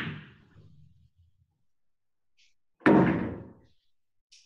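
Two thuds: a softer one at the start and a loud one about three seconds in, each dying away in under a second.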